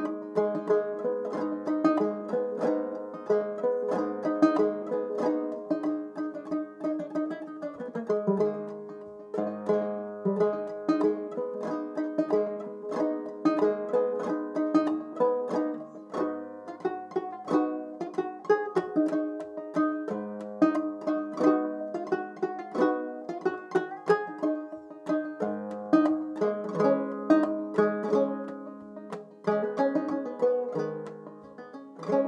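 Banjo played clawhammer style, solo: a quick, continuous stream of plucked and brushed notes carrying a melody, broken by short breaths between phrases.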